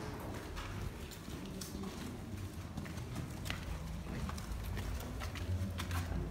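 Footsteps of several people walking, an irregular run of clicking and tapping steps over a low rumble.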